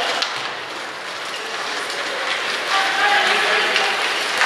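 Ice hockey in play in an arena: a steady hiss of skates on the ice with scattered sharp clacks of sticks and puck, and spectators' voices.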